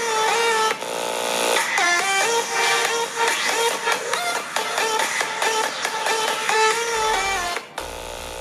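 Electronic music with a bright synth melody and a regular beat, played through a Samsung Galaxy S9 phone's speakers as a speaker demo. It has little bass and thins out near the end.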